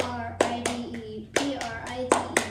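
A child's voice chanting at a steady pitch, punctuated by several sharp hand claps, as part of a clap-and-chant school pledge routine.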